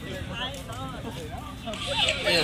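Indistinct talk of passers-by over a low, steady street rumble, with no clear words.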